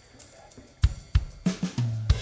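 Logic Pro Drummer's virtual acoustic kit (SoCal) playing back a drum fill. After a quiet start, kick, snare and cymbal hits come in about a second in and crowd together towards the end, leading into the verse.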